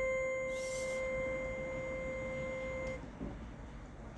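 A held piano chord ringing on in even octave-spaced tones, fading slowly and cut off about three seconds in when it is damped.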